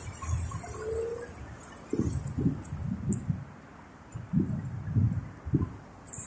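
Irregular low thumps and rumbles of a handheld phone being carried by someone walking, in two bunches, over faint street noise.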